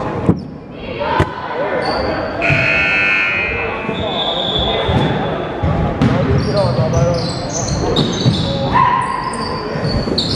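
A basketball bouncing on a hardwood gymnasium floor during a game, with short high squeaks through the second half and voices throughout.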